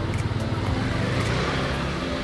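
Motor scooter engine running as it rides up close and passes by, the sound swelling a little midway.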